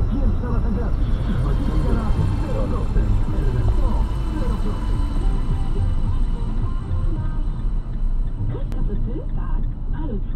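Steady road and engine rumble inside a car driving at expressway speed, with indistinct talking and music running underneath it.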